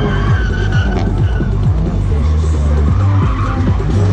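Gymkhana race car's tyres squealing as it is thrown through the cone course's turns, a held high squeal, over background music with a steady bass.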